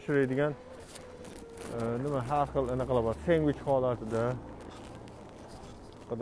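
A person talking in short phrases, with pauses between them. A faint low hum runs underneath the voice.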